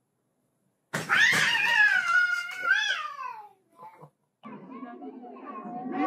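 A cat giving one long, drawn-out meow about a second in, lasting over two seconds and sliding down in pitch at the end.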